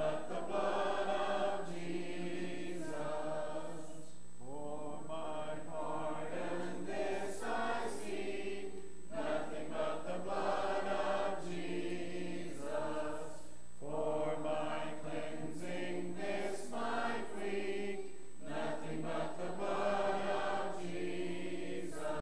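Congregation singing the invitation hymn a cappella, in long held phrases with short breaks between them.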